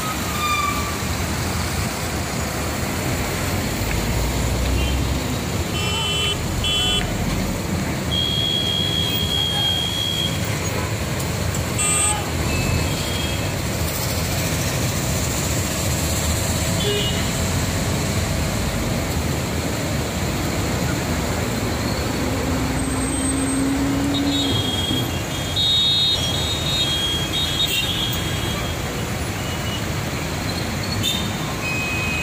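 Steady road-traffic noise from a long queue of cars and trucks with their engines running. Short horn toots sound now and then, and one longer, lower horn note comes late on.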